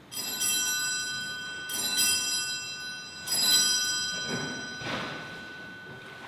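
A bell struck three times, about a second and a half apart, each stroke ringing on with long sustained overtones that overlap the next. Softer, duller sounds follow around four to five seconds in while the ringing dies away.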